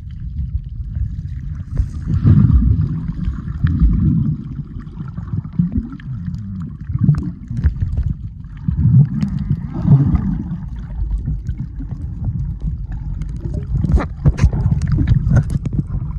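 Muffled underwater sound from a camera held below the surface: water rushing and gurgling against it in a low rumble that surges and eases as the swimmer moves, with scattered sharp clicks.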